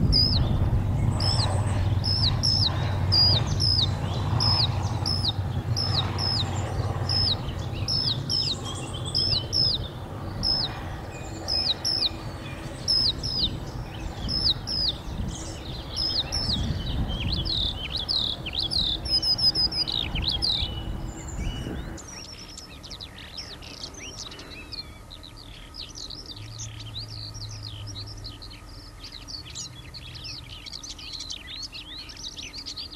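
Eurasian skylark singing, a run of short, sharply repeated high notes about two a second, over a low rumble of distant road traffic. After a cut about 22 seconds in comes a quieter, denser stream of rapid warbling skylark song.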